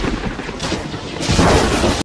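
Wind buffeting the phone's microphone in a loud, rumbling rush, louder from a little over a second in.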